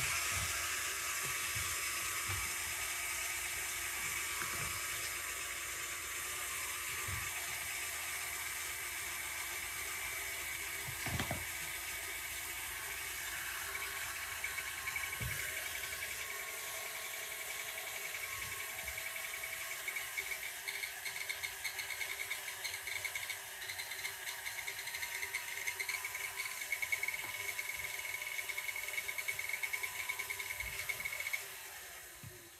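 KitchenAid stand mixer's electric motor running steadily with its end cover off while its stir speed is set at the speed control, with a few light knocks of hands working on the machine.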